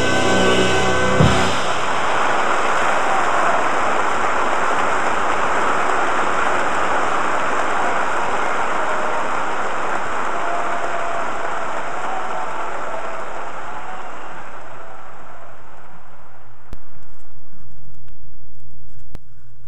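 A big band holds its final chord and cuts off on a sharp hit about a second in. A live audience then applauds, and the applause slowly fades out toward the end.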